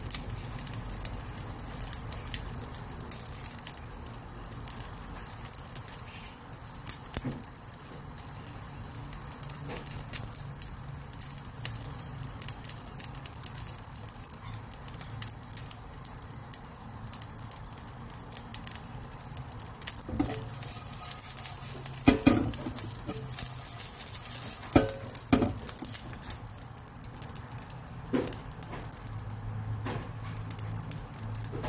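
Mealworms frying in a pan: a steady sizzle with scattered crackles and small pops, and a few louder pops about two-thirds of the way through.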